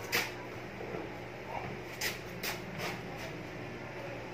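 Quiet room with a faint steady low hum and a few short, soft rustles: one at the start and four about two to three seconds in, like clothing brushing as someone bends over and handles a seated person.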